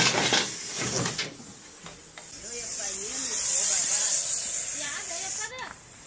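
Russell's viper hissing defensively: a long, steady hiss of about three seconds that swells and then stops, after a brief clatter of objects being shifted at the start.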